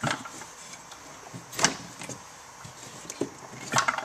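Snowmobile drive belt being worked off the clutch sheaves by hand: quiet rubbing and handling with a few sharp clicks and knocks, the loudest about one and a half seconds in.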